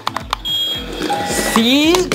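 A toy robot's electronic sounds: a short high steady beep, then a brief lower tone and a rising warble, over background music with a steady beat.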